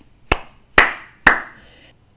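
Three hand claps, about half a second apart: the third step of a growing clapping pattern, one clap more than the step before.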